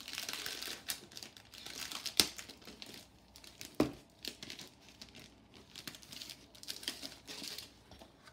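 Cellophane wrapping crinkling and crackling as it is peeled back and a pack of foil cardstock sheets is slid out of it, with two sharper snaps about two and four seconds in.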